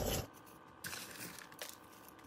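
Faint crunching and crackling of bark-chip potting mix being handled and pressed into a terracotta pot around orchid stems, in a couple of brief bursts about a second in and again a little later.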